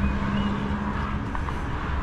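Wind buffeting the microphone in the open air, a steady low rumble. A steady low hum underneath stops a little over halfway through, and there are two faint short high chirps near the start.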